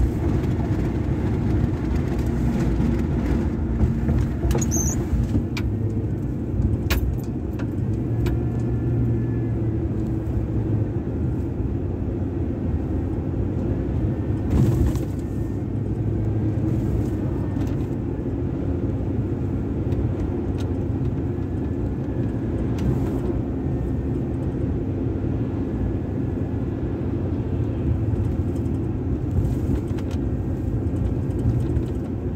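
Steady engine and tyre rumble of a pickup truck heard from inside the cab while driving, with a few brief clicks about five and seven seconds in and again midway.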